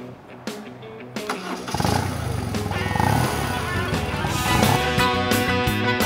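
Background music; about two seconds in, a BMW R1200C cruiser's flat-twin engine fires up and revs, heard under the music, which settles into steady electric guitar near the end.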